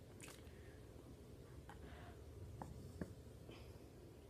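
Near silence with a few faint clicks in the second half as the cap of a plastic hot sauce bottle is handled and opened, the last click about three seconds in the most distinct.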